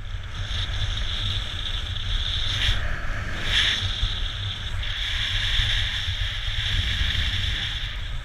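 Wind buffeting a helmet-mounted action camera's microphone during a ski run down a groomed piste: a steady low rumble under a continuous hiss of skis sliding on snow.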